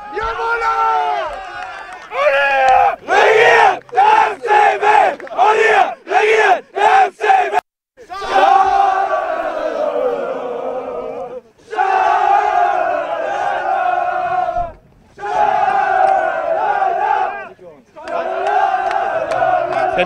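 A football team's men's voices chanting together in victory celebration: first a string of short, rhythmic shouts, then, after a sudden cut, a long sung chant in several held stretches.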